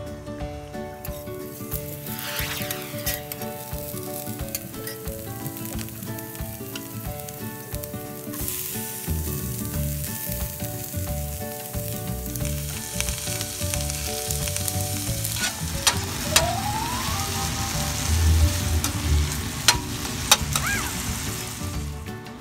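Strips of green pepper and carrot stir-frying in an oiled cast-iron skillet for kinpira: steady sizzling, with a metal spatula clicking and scraping against the pan. The sizzle grows much louder about eight seconds in.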